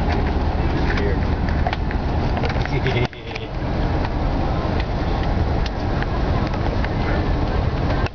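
Steady road and engine noise inside the cabin of a Chevy van at highway speed, with a sudden short dip about three seconds in.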